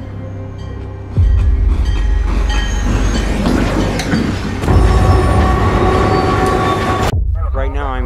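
A freight train rolling past: a loud low rumble sets in about a second in, with scattered wheel clicks, and a chord of steady held tones joins about halfway through. The whole sound cuts off abruptly near the end.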